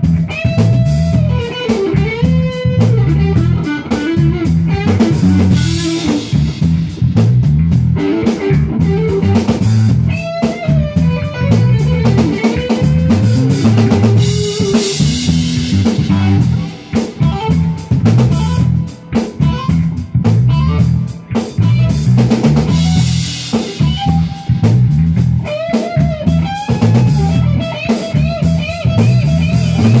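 Live funk band playing an instrumental passage: an electric guitar line with bent notes over a driving bass guitar riff and a drum kit.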